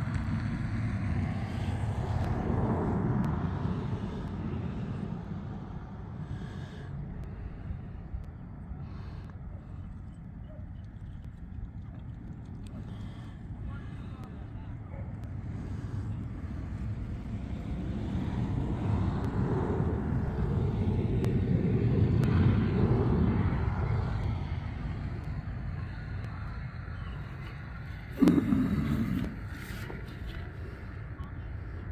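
Wind rumbling on the microphone outdoors, swelling and easing twice, with faint indistinct voices in the distance. A brief low thump comes near the end.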